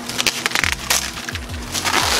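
Protective plastic film being peeled off a plexiglass (acrylic) sheet, crackling in several bursts, over background music.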